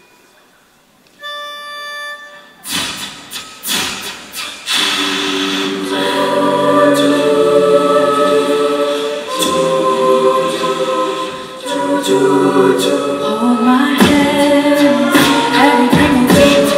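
A short steady note sounds about a second in, like a starting pitch. From about three seconds in, an a cappella group sings in close harmony over vocal percussion, growing loud a couple of seconds later.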